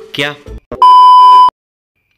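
A single loud, steady electronic bleep tone, the kind edited in as a censor or gag sound effect, lasting well under a second and cutting off suddenly, just after a man's short spoken word.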